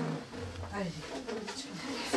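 Indistinct voices of several people talking quietly over one another, with a low hum-like sound just under a second in.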